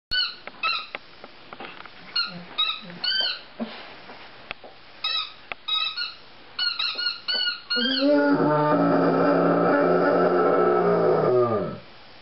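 Dog whining in a run of short, high, squeaky whimpers, then a long, low, drawn-out whine of about four seconds that drops in pitch as it ends.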